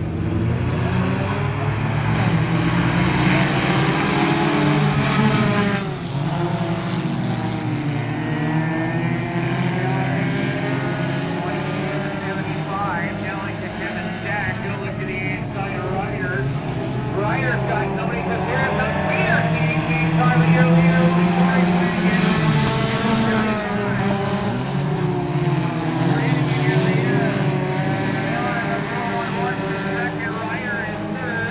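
A field of IMCA Sport Compact race cars, their four-cylinder engines revving around a dirt oval, pitch rising and falling as the cars accelerate, lift and pass; loudest a little past the middle.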